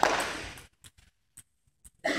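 A loud sudden burst of noise that fades over about half a second, followed by a few faint sharp clicks about half a second apart, like a table tennis ball bouncing away on a hard floor in a large hall.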